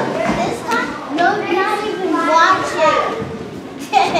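Children's voices talking and chattering in a large hall, with no words standing out clearly.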